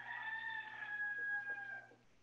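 A single long, pitched animal call of about two seconds, its pitch falling slightly toward the end, picked up faintly through a video-call microphone over a low electrical hum.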